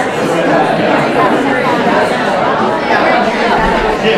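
Lecture-room audience talking in pairs all at once: many overlapping conversations blending into a steady babble of chatter.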